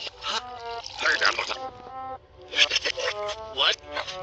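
Cartoon soundtrack played backwards: reversed voices over music with held notes that step in pitch.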